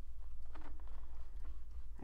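Small screwdriver driving a tiny screw into a scale model's side trim: faint, irregular clicks and scrapes as it turns, over a steady low hum.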